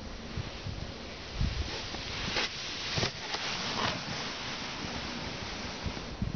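A sled sliding down a packed-snow run, a steady scraping hiss with a few brief bumps around the middle as it comes closer.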